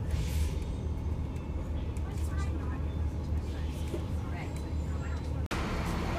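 Steady low engine rumble of idling buses echoing in an enclosed transit station, with a brief hiss just after the start and faint distant voices.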